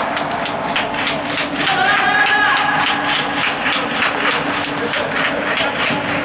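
Scattered hand clapping, a few sharp claps a second, mixed with a few shouts from players and spectators, celebrating a goal.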